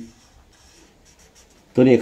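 Red felt-tip marker drawing an underline on notebook paper: a few faint, scratchy strokes. A man's voice comes in near the end.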